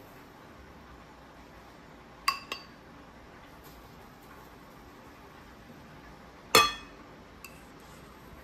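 Stainless steel mesh sieve knocking against the rim of a ceramic bowl while flour is sifted, ringing clinks: two quick taps a little over two seconds in, a louder single clink about six and a half seconds in, then a faint tick.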